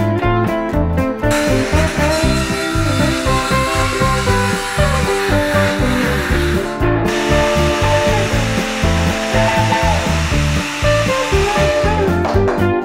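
A Ryobi cordless power planer shaving a wooden board, a dense hissing whir that starts about a second in. It runs in two long stretches with a short break about seven seconds in, under guitar background music.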